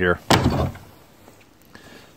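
Wooden board-and-batten outhouse door being pulled open: one short sharp sound about a third of a second in that quickly fades.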